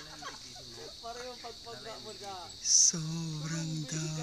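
Steady high-pitched chorus of insects, with people's voices talking underneath. A short, sharp, high sound is the loudest moment, just before three seconds in.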